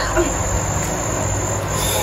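Steady background noise: an even hiss with a low hum and a constant high-pitched tone, like insects or crickets.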